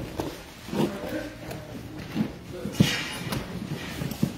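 Cardboard boxes being moved and opened: a few scattered thumps, the loudest right at the start and another about three seconds in, over faint background chatter.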